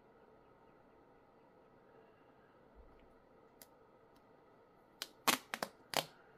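Faint room tone, then about five seconds in a quick run of sharp crackling clicks as a thin plastic screen protector film is peeled off a phone's glass screen.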